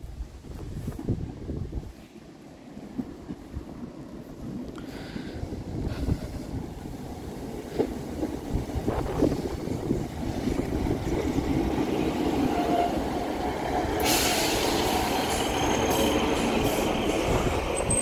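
A Class 153 single-car diesel railcar arriving at a station platform, with its Cummins underfloor diesel engine and its wheels on the rails growing steadily louder as it approaches and draws alongside. A loud hiss starts suddenly about fourteen seconds in and carries on as it comes in.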